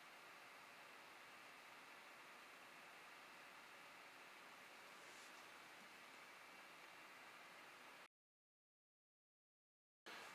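Near silence: a faint, steady hiss of room tone and recording noise, which drops out to dead silence about eight seconds in.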